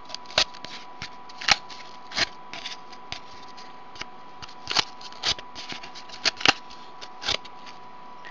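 Threads being dragged through the slits of a cardboard braiding disc, with the cardboard gripped and turned in the hand: irregular scratchy rustles and scrapes, seven or eight louder ones spread through.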